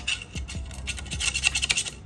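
A long metal screwdriver-type tool scraping dirt and old grease from around a motorcycle's front sprocket in a run of short scratching strokes, busiest in the second half.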